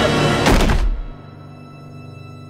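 A heavy body thud about half a second in, as a heavyset man falls to the floor, over ominous dramatic music that carries on more quietly afterwards.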